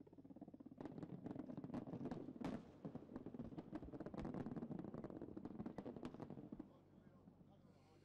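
Many explosive charges buried in an earthen dyke go off one after another, a dense string of rapid sharp cracks that stops about seven seconds in.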